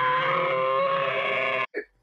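A long, drawn-out "argh" yell of exasperation, held at a steady pitch for nearly two seconds and cut off abruptly.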